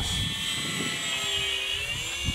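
Durafly Goblin Racer RC plane in flight: its electric motor and propeller give a steady high whine, the pitch dipping slightly near the end.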